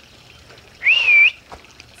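A person whistles once, a short whistle that rises, dips and rises again, to get the puppies to look up.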